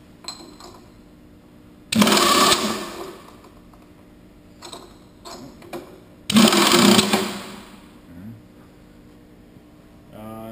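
Pneumatic A&T power drawbar on a Clausing Kondia vertical mill cycling in and out: two short air-driven bursts, about two seconds and six seconds in, each under a second and dying away, with a few light clicks between them.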